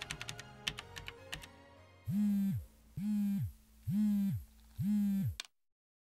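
The last plinking notes of the ending song fade out. Then a mobile phone buzzes four times, about a second apart, signalling an incoming call, and the buzzing stops abruptly.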